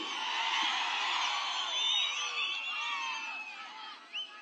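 Rally crowd cheering and whooping, many voices overlapping. It dies away toward the end.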